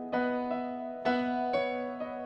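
Piano chords played on an electronic keyboard, slow and sustained, with three chords struck: one at the start, one about a second in and another half a second later.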